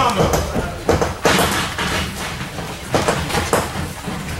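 Boxing gloves striking during sparring: several irregular sharp thuds of punches landing on gloves and headgear, mixed with footwork on the ring canvas, over background gym voices.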